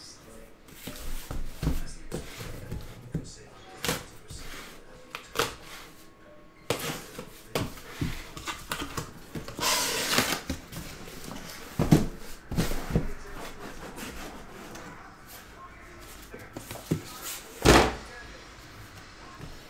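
A cardboard shipping case being opened and unpacked by hand: flaps rustling and scraping, with irregular knocks as the sealed card boxes are lifted out and set down. There is a sharp knock about twelve seconds in and another near the end.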